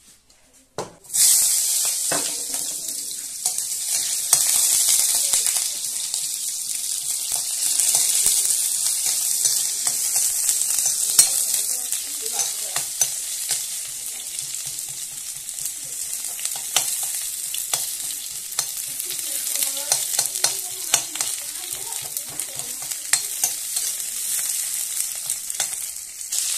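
Onions and meat pieces frying in hot oil in a steel kadai, sizzling steadily, with the steel ladle scraping and clinking against the pan as it stirs. The sizzling starts suddenly about a second in.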